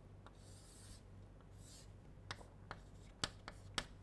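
Chalk on a blackboard: two soft scraping strokes in the first two seconds, then four sharp taps as the chalk strikes the board, all faint over a steady low hum.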